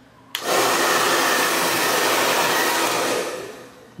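Chaoba 2000 W hair dryer switched on with a click at its higher fan speed, giving a steady, loud rush of air, then switched off near the end and winding down.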